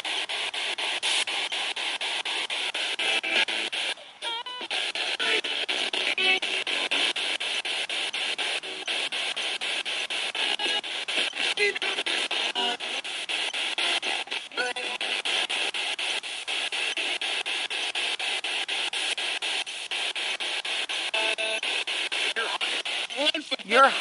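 A spirit box scanning rapidly through radio stations. It gives a steady static hiss, broken up many times a second, with brief scraps of broadcast voices and music.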